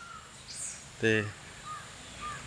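A bird calling faintly in the background, two short calls in the second half.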